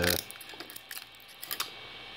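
A few light clicks and taps as a small 3D-printed plastic figure is handled and set down on a 3D printer's bed, the clearest about a second and a half in.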